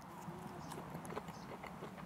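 Faint chewing with small irregular mouth clicks as a man eats a bite of freshly tandoor-roasted food.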